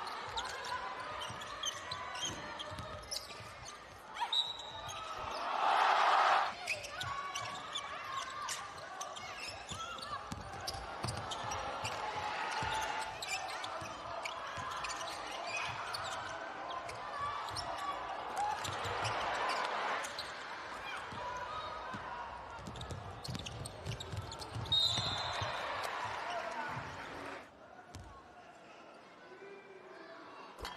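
Live basketball game sound in an arena: the ball bouncing on the hardwood court amid voices and crowd noise. The crowd noise swells twice, about five seconds in and again near the end.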